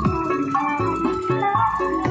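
Loud music from a truck-mounted parade sound system's stacked speaker cabinets: a simple high melody over deep bass notes in a steady beat.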